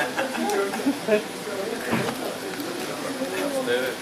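Indistinct talk from several people at once, with a few short sharp clicks.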